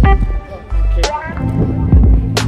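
Background music with a heavy bass beat and a vocal line, dipping briefly in the middle.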